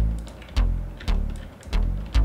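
Synth bass notes from the Diversion software synthesizer, played one at a time, each with a sharp attack that fades away, about two notes a second.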